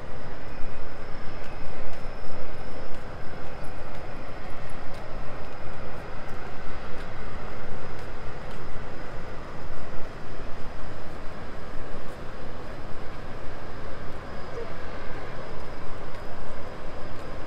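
Steady city street noise of road traffic moving past at a busy junction.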